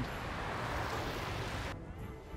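City street traffic on a wet road: an even hiss of passing vehicles. It cuts off suddenly near the end, leaving a quieter background.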